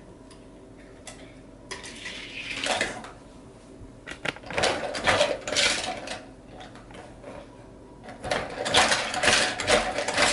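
Plastic parts of a Hot Wheels Ultimate Gator Car Wash toy playset clattering and rattling as it is handled by hand. The clatter comes in three bursts: about two seconds in, around the middle, and again near the end.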